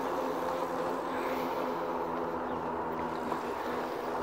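RadMini electric fat-tyre bike riding on pavement: its rear hub motor runs with a steady whine, over the hum of the tyres and wind noise.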